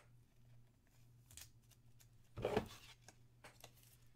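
Trading cards being handled on a table: a short scraping rustle a little past halfway, with a few faint clicks around it.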